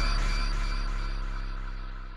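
Instrumental outro beat dying away: the drums have stopped and a held deep bass note with a sustained chord fades out steadily.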